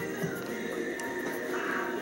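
Background music with steady held notes, and a rough, wavering sound near the end.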